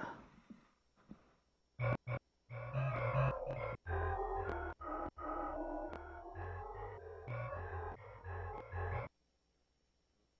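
A sampler instrument in a DAW playing back a melodic beat loop with a low stepping bass line. It starts with two brief blips about two seconds in, plays for about six and a half seconds, and cuts off suddenly near the end.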